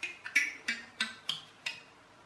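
Homemade thumb piano with wooden coffee-stirrer tines clamped between scrap wood, plucked about six times at a steady pace. Each pluck is a sharp click with a short, faint low note. It is held off its waste-bin sound chamber, so it is only just audible.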